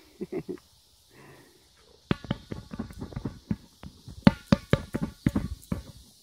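Large inflated plastic play ball being knocked and bumped: three quick taps, then from about two seconds in a fast, uneven run of thumps with a hollow ring.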